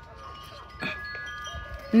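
Chimes ringing: several clear tones at different pitches overlapping and lingering, with a fresh strike just under a second in.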